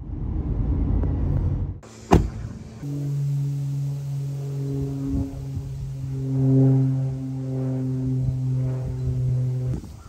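Low road rumble from inside a moving car for about the first two seconds, ending in a sharp click. Then background music: a held chord of low, steady notes that carries on until just before the end.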